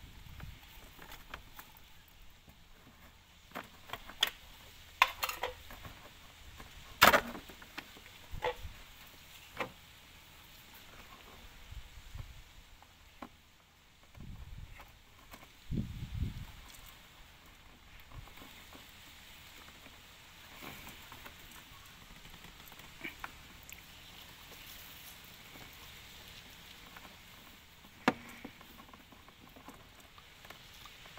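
Scattered clicks and taps of hard plastic being handled as the wiring connector, held by a wire spring clip, is worked off a Jaguar XJ8 X308 indicator lamp. The sharpest click comes about seven seconds in, with a dull thump around sixteen seconds.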